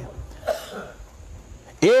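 A short pause in a man's amplified speech, with a faint cough or throat-clearing about half a second in over a low steady rumble.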